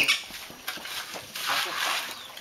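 Indistinct voices mixed with animal sounds, in short irregular noisy bursts, loudest at the very start.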